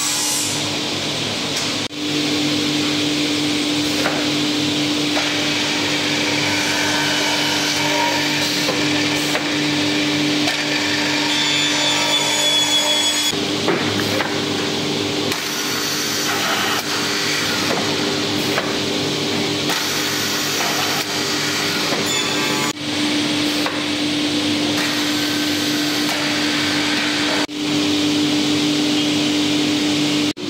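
Two-head woodworking boring machine running, with a steady motor hum, while its drill bits bore into the edge of a laminated plywood panel. The sound breaks off suddenly a few times.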